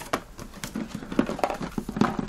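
A motherboard's cardboard retail box handled by gloved hands as it is lifted and stood upright: a run of short knocks and rubs, sparse at first and busier in the second half.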